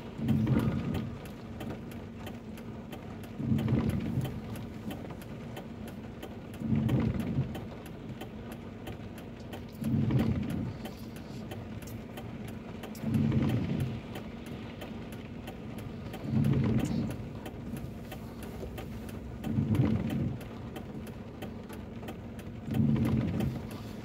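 Windscreen wipers on intermittent, each sweep a short low swish, eight sweeps evenly spaced about three seconds apart, heard from inside the car over the steady hum of the stationary car's engine idling.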